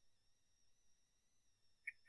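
Near silence: faint room tone with a thin steady electronic whine, and one small click near the end.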